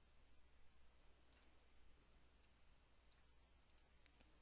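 Near silence: faint room tone with a few faint computer-mouse clicks spread through it.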